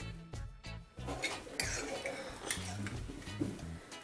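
A metal spoon clinking and scraping faintly against a glass bowl as a potato croquette is turned in beaten egg.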